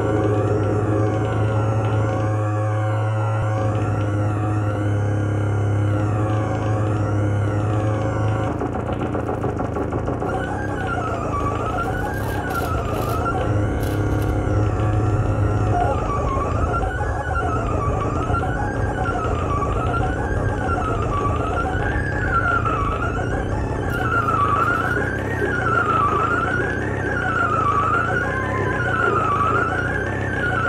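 Live electronic drone music from a table of electronic instruments. A steady low drone fills the first eight seconds or so. Then high, siren-like tones rise and fall in pitch about once a second, over a steady bed of sound.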